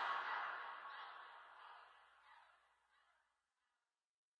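The fading tail of an editing transition: a hissy, reverberant swell dies away over about two and a half seconds, then dead silence.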